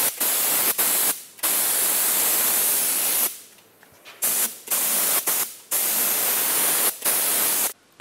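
Gravity-feed paint spray gun on a compressed-air hose hissing in bursts as the trigger is pulled and released: a couple of longer passes of about two seconds, then a run of short stop-start bursts, with a pause of about a second near the middle.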